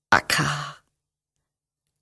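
A woman's voice making one short breathy utterance near the start: a sharp catch, then a sighing breath over a low held tone, about two-thirds of a second long. The same sound recurs about every two seconds.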